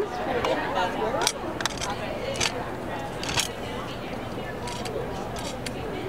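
Steady background chatter of a busy exhibition hall, with a few light clicks and rustles of ink pads and paper flowers being handled on a tabletop.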